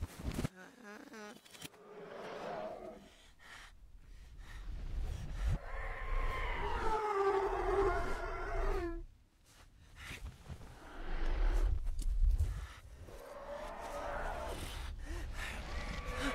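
Animated-film soundtrack played backwards: pitched, voice-like sounds and low rumble swelling up and then cutting off abruptly, as reversed sounds do, about nine seconds in and again near thirteen seconds.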